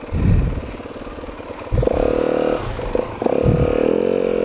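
Dirt bike engine blipped once at the start, then revved and held at a steady pitch about two seconds in, easing off briefly and revving again near the end as the bike is worked around to turn on a steep hillside.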